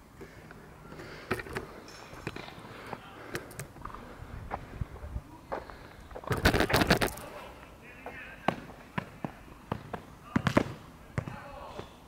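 Irregular sharp knocks and clicks of handling noise, with a louder, denser cluster of knocking and rustling about six seconds in.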